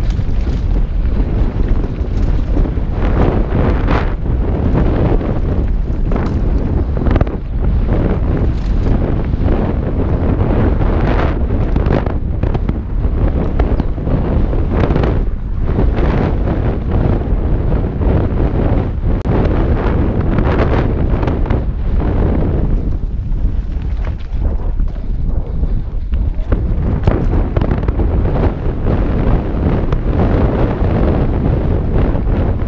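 Wind rushing over a helmet-mounted action camera's microphone on a fast mountain bike descent, mixed with tyre noise on a dirt trail. Irregular knocks and rattles come from the bike going over bumps.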